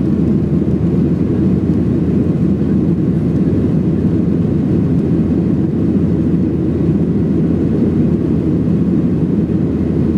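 Steady, loud cabin noise of a WestJet Boeing 737 climbing after takeoff, heard inside the cabin: an even, deep rumble of the jet engines and rushing airflow, unchanging throughout.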